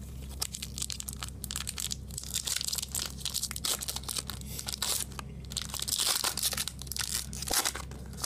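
Foil wrapper of a Magic: The Gathering booster pack crinkling and tearing as it is handled and ripped open, a dense run of irregular crackles that is loudest about six seconds in.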